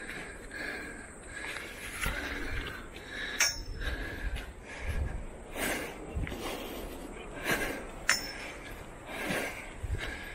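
A man breathing hard, puffing and wheezing about every second or two as he walks up a steep path, with his footsteps.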